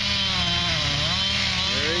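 Chainsaw running under load as it cuts through a large tree trunk, its engine pitch sagging a little about halfway through.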